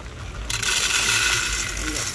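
Whole coffee beans pouring from the bag into a clear plastic grinder hopper: a dense rattling patter of beans hitting plastic and each other, starting suddenly about half a second in.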